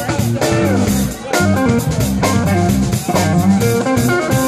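A live instrumental rock and jazz-fusion band playing: a drum kit with frequent cymbal and drum hits, a bass guitar line, and a guitar playing a moving melodic line.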